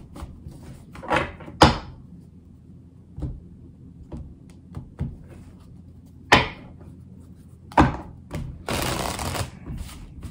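A tarot deck handled and shuffled by hand: a series of short card swishes and taps a second or so apart, with a longer stretch of card noise near the end.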